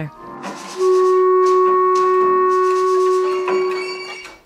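Music from an electronic accessible instrument: one long steady woodwind-like note, held about three seconds, with a higher note coming in near the end.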